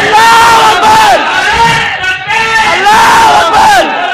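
A man shouting slogans into a microphone over a public-address system, in long high-pitched calls that rise and fall, with a crowd shouting along.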